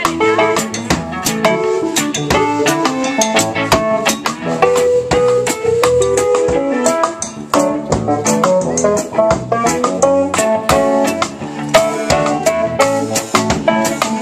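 Live band playing an instrumental passage: drum kit keeping a steady beat under electric guitar, bass and a keyboard lead line.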